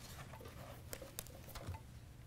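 Faint rustling and a few light clicks of paper sheets being handled, over a steady low room hum.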